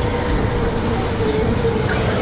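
Escalator running, a steady mechanical rumble with a wavering squeak running through it.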